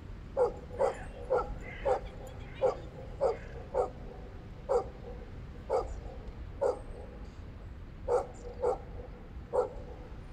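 A dog barking repeatedly: about a dozen short barks, roughly two a second, with a brief pause near the end.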